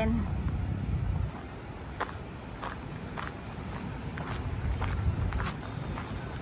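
Footsteps on sand at a walking pace, soft ticks about every half second to two-thirds of a second, over a low steady rumble that is louder in the first second.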